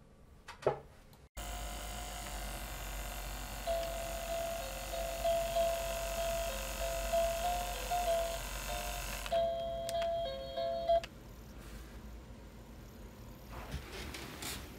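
A baby bassinet's soothing unit, running on an AC adapter through dummy batteries, switched on with a click. A steady hiss with a low hum starts, and a simple electronic lullaby in thin chime-like tones plays over it. The hiss cuts off about nine seconds in and the tune ends about two seconds later.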